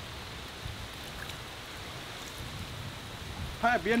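Steady outdoor background noise, heaviest in the low rumble, with no distinct events in it. A man's voice says one word near the end.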